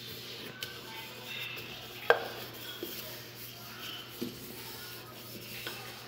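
A cup being worked against rolled bread dough on a stone countertop to cut off its edge, giving a few faint scattered taps and knocks, the sharpest about two seconds in.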